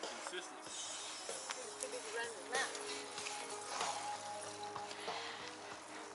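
Music with voices playing faintly from a passing cyclist's bike-mounted speaker.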